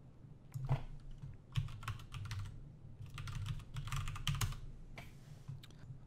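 Typing on a computer keyboard: irregular clusters of keystrokes, entering a login name and password at a terminal prompt.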